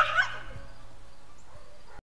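A dog barks twice in quick succession, the first bark louder.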